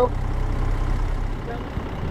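Land Rover Defender 90's engine running steadily at idle, a low even hum.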